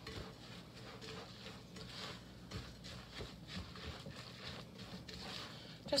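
A spatula stirring a moist breadcrumb-and-egg mixture in a bowl: faint, irregular scraping and squishing strokes.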